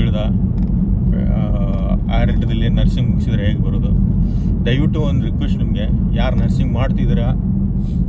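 Steady low rumble of a car driving, heard inside the cabin, under a man talking.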